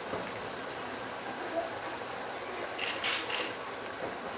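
Slotted metal spoon scooping cooked basmati rice from a pot and dropping it onto chicken curry in a larger pot, with a few soft scrapes and taps around three seconds in, over a steady low hiss.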